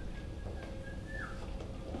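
A faint, steady high tone that slides down in pitch about a second in, over a low hall rumble.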